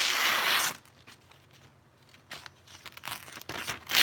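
A sheet of lined notebook paper being sliced with a machete blade, testing how sharp the edge is; the cut runs for less than a second and stops abruptly. Then a few light paper rustles and taps follow, with a sharper rustle near the end.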